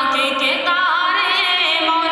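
A boy's high voice chanting a devotional recitation unaccompanied, holding long notes with wavering, ornamented turns and gliding between pitches.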